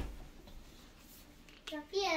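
Faint rustling and scraping of hands handling a plastic skincare tube in a quiet room. About one and a half seconds in, a high-pitched child's voice starts.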